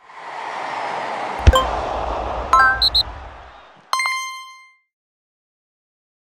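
Logo sting sound effect for a channel end card: a swelling whoosh with a sharp low hit about one and a half seconds in, a few quick bright pings, and a final ding about four seconds in that rings briefly.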